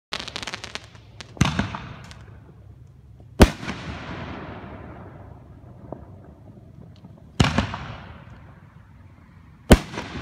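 Aerial fireworks going off: a quick run of sharp crackles, then four loud bangs two to four seconds apart, each trailing off in a fading crackle.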